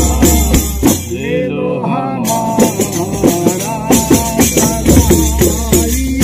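Men singing a devotional Sufi chant together, accompanied by a frame drum's beats. The drumming drops out for about a second early on while the singing carries on, then comes back.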